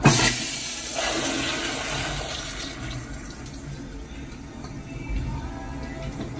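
Gerber Ultraflush pressure-assisted toilet with a Flushmate 503 pressure vessel flushing: a sudden, loud blast of water the instant the handle is pressed, then a rush of water through the bowl that fades over the next few seconds.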